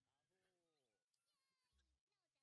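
Near silence, with only very faint traces of pitched, voice-like sounds.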